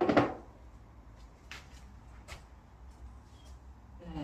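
A short handling clatter at the very start, then two faint clicks, over a low steady room hum.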